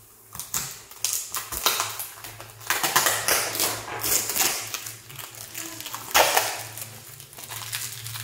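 Packaging being handled and opened by hand: an irregular run of clicks, crinkles and scrapes, loudest about three seconds in and again past six seconds, over a low steady hum.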